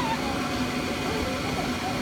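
Electric air blower of an inflatable bounce house running with a steady hum, with children's voices faintly over it.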